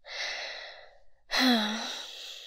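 A woman breathes in deeply, then lets out a breathy, voiced sigh of contentment that is louder and shorter than the breath in.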